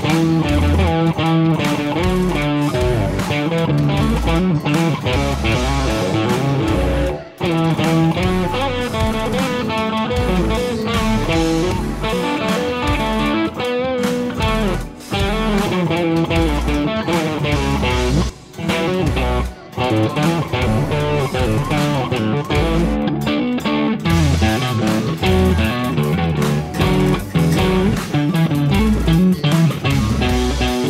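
Electric guitar playing a fast, intricate instrumental rock part over a backing track with bass and a low, punchy beat, with a few brief breaks, about 7 and 18 seconds in.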